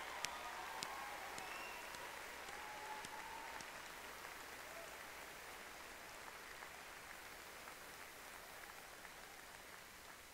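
Audience applauding in a large hall, the clapping tapering off gradually until it has nearly died away near the end.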